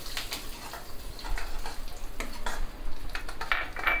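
A metal spoon scrapes and clinks against a kadhai, stirring spices in hot oil and ghee for a tadka. Under it a light sizzle thins out in the second half.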